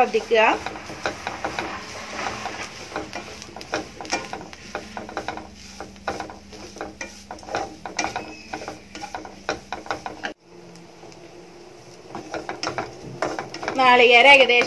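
Wooden spatula stirring and scraping grated coconut with shallots and green chillies around a nonstick pan as it roasts, in quick repeated strokes. The scraping cuts off suddenly about ten seconds in and goes quieter until near the end.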